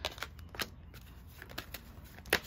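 A deck of oracle cards being handled by hand: a card is drawn from the fanned deck and the deck is squared. There are a few short, sharp snaps of card against card.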